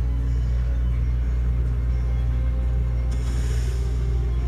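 Television episode soundtrack: dramatic background music over a steady deep rumble, with a short hissing whoosh about three seconds in.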